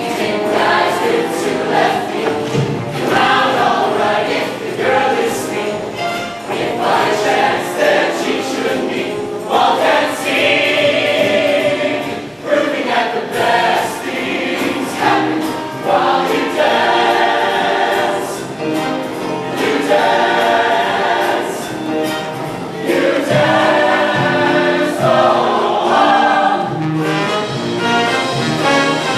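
A large mixed show choir singing in full harmony over live band accompaniment with a steady beat.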